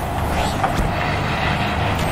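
A steady low rumble with a hiss of noise over it: a cinematic sound effect under an animated logo intro.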